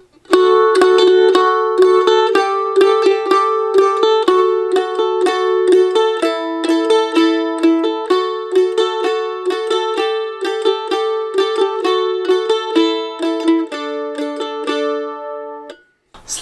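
Mandolin picked in steady, even strokes: a moving line of notes on the D string against the open A string ringing alongside as a drone, ending on the low D.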